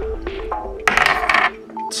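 A small plastic six-sided die is thrown onto a desk and clatters as it rolls for about half a second, a little under a second in. Background music with a simple melody of held notes plays under it.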